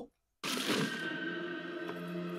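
The sound cuts out completely for a moment, then quiet background music with held, steady tones returns.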